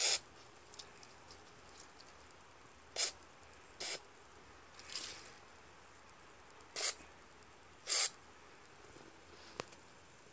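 Aerosol can of Liquid Wrench penetrating oil sprayed through its straw in about six short hissing spurts onto a seized axle, with a small click near the end.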